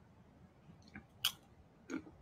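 A person chewing food, with three short sharp crunches; the loudest comes just past a second in.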